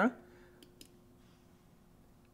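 Two quick computer mouse clicks about half a second in, against a faint steady hum of room tone.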